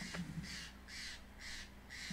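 A jay calling nearby: a quick series of short, harsh notes, about two or three a second, held at a steady low level.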